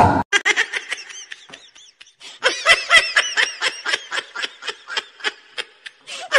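A person laughing in a fast run of short, high-pitched giggles, with a brief lull about two seconds in before the laughing picks up again.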